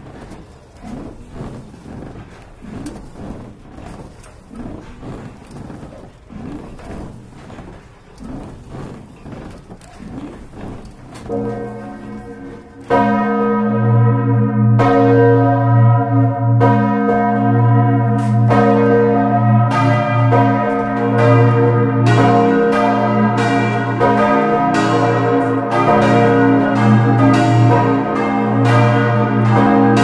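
Church bells cast by Cavadini in 1931, swinging up with only a faint rhythmic sound at first. About 13 seconds in, the clappers begin to strike and the full peal rings out suddenly and loudly: four bells in repeated strokes, the fifth out of service. The deep great bell, tuned to B-flat, dominates.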